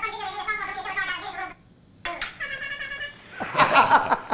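Sped-up, very high-pitched voice chattering quickly from a phone playing a Snapchat clip of rapid-fire news, with a short pause about halfway. Near the end a burst of loud laughter.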